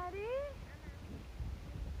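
A high-pitched voice draws out one rising-then-falling syllable that ends about half a second in, followed by low wind rumble on the microphone.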